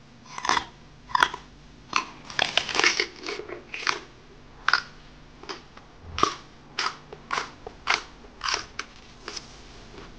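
Crisp crunching bites and chewing of raw vegetables, first a whole raw carrot, then raw okra pods, with a sharp crunch about every half second and a quick run of crunches a few seconds in.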